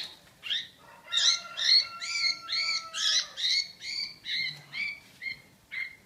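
Red-whiskered bulbul giving short harsh calls over and over, about two a second, while a hand grabs for it inside a small cage: distress calls of a bird being caught.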